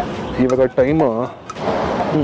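A person's voice speaking briefly, then a short rush of noise near the end.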